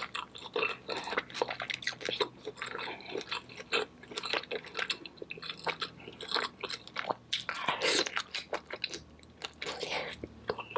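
Close-miked chewing and biting of sauce-drenched seafood, full of fast wet mouth clicks and lip smacks. The loudest, longest smack comes just before eight seconds in.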